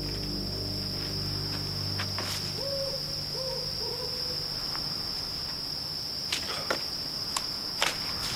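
A steady, high, unbroken cricket trill of night-time woodland ambience, with the tail of a sustained music chord fading out in the first two seconds. Three short low calls come around three to four seconds in, and a few light steps or ticks near the end.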